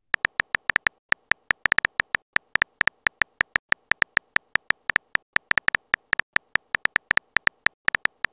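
Texting-app keyboard typing sound effect: a fast, uneven run of short, high-pitched clicks, about five or six a second, one for each letter as a message is typed out.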